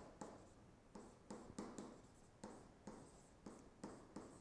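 Faint taps and scratches of a stylus writing on a tablet, short strokes at an irregular pace.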